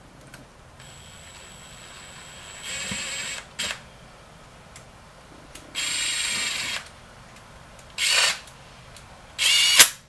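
Kobalt 24-volt cordless drill spinning oil pan bolts in through a long socket extension, running in four short bursts of about a second or less, the last the loudest.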